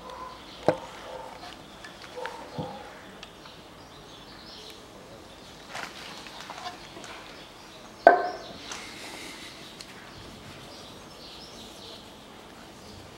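Handling noises at close range: a few short clicks and knocks, the sharpest about eight seconds in, with light rustling between them, as a cleaner-soaked rag is handled near the car's bonnet.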